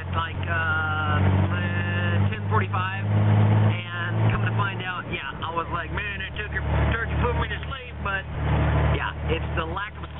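A man talking inside a moving car, over the steady low drone of the car's engine and road noise heard from within the cabin.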